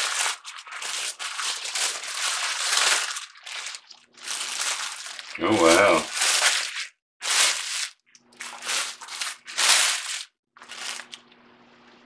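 Tissue paper being unwrapped and crumpled by hand, in a run of crinkling rustles with short gaps between. It stops about a second before the end.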